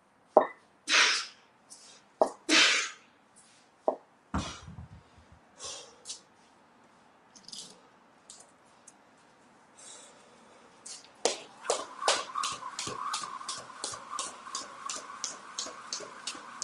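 Two loud, sharp exhales, then a low thud about four seconds in. From about eleven seconds, a jump rope ticks against the floor in an even rhythm of about three strokes a second.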